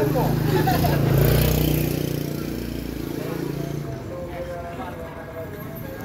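A motor vehicle passing close by: a low engine rumble that swells to its loudest about a second in and fades away by about four seconds, with indistinct voices behind it.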